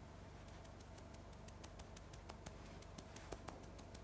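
Near silence: room tone with a low hum and a faint, rapid ticking, about six to eight ticks a second.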